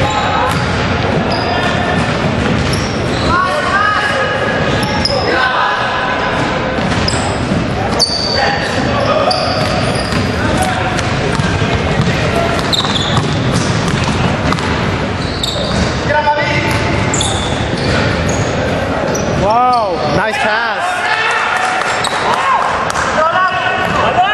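Basketball game sounds in a gym: the ball bouncing on a hardwood court, with many short, high squeaks from sneakers on the floor and players calling out to each other, all with the echo of a large hall.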